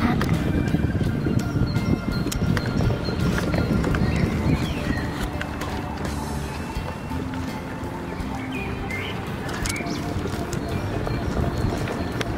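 Steady rumble of small wheels rolling over asphalt, with scattered clicks, and music playing along with it.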